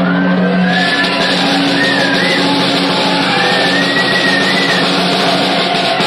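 Live rock band playing: drum kit and cymbals over sustained low bass notes, with a high lead line sliding and bending in pitch.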